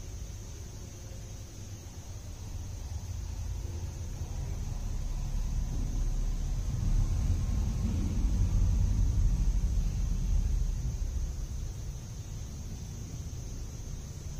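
A low rumble that builds over several seconds, is loudest in the middle and fades again, over a steady high hiss.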